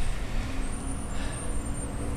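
Steady low rumble of road traffic from the street outside.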